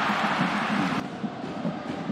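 A stadium football crowd roars in reaction to a left-foot shot on goal. The noise cuts off suddenly about a second in, leaving a quieter crowd murmur.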